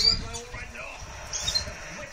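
Domestic canaries giving a few short, high chirps, one right at the start and another about a second and a half in, over a background radio football commentary.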